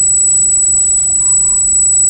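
Steady road and engine noise inside a moving car, with a constant high-pitched electronic whine over it.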